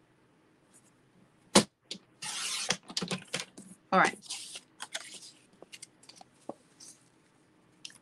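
Cardstock being cut on a sliding-blade paper trimmer: a sharp click about a second and a half in, then a brief scrape of the blade running through the card, followed by light rustling and clicks as the card is handled.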